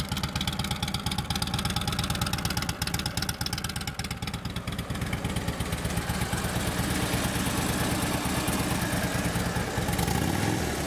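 A 2009 Harley-Davidson Ultra Classic's fuel-injected 96-inch Twin Cam V-twin idling steadily with an even low pulse, a little louder in the second half.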